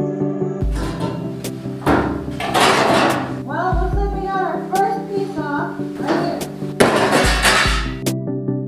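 Angle grinder cutting into the metal of an old stove in two long gritty bursts, from about half a second in and again near the end, over steady background music. Between the bursts a woman's voice speaks briefly.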